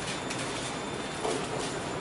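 Steady background noise: an even, unpitched hiss, with a faint short sound about a second and a quarter in.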